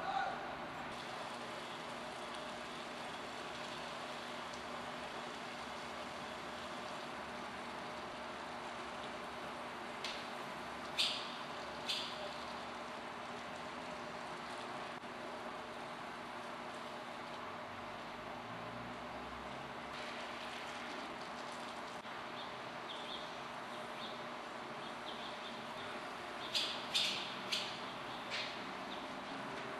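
Barn swallows giving short, high chirps: three about ten to twelve seconds in, a few fainter ones later, and a quick run of four near the end, over a steady low hiss.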